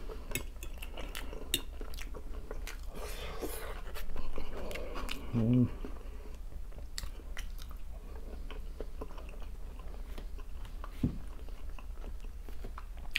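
Close-miked chewing and biting of fried potatoes and other food, with many small wet mouth clicks. A brief low hum from the eater comes about five and a half seconds in.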